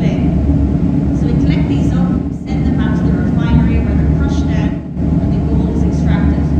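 A woman's voice speaking, amplified through a headset microphone, over a steady low hum.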